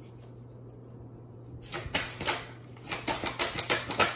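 A tarot deck being shuffled by hand: a quick run of clicks and taps starting a little under two seconds in, coming faster and louder near the end.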